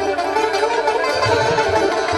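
Sitar playing a melody with gliding, bent notes over low tabla strokes, in a Persian–Hindustani classical improvisation.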